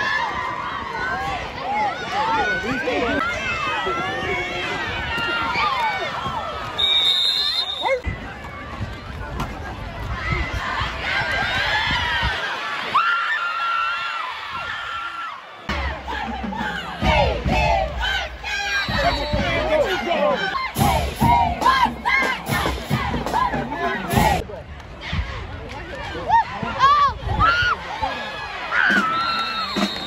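Crowd and sideline voices shouting and cheering, many voices overlapping, with a few abrupt jumps in the sound where the recording cuts.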